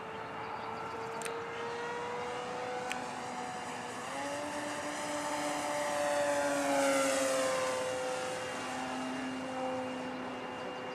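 Brushless electric motor and propeller of an electric RC P-47 Thunderbolt model, a steady whine in flight. The pitch steps up about four seconds in, the sound grows loudest around seven seconds as the plane passes low, then the pitch sinks as it flies away. There are two faint clicks in the first three seconds.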